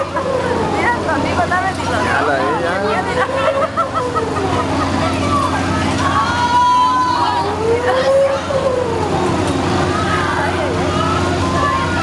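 Fairground swing ride in motion: many riders' voices crying out in long rising-and-falling calls and shouts over a steady low machine hum from the ride.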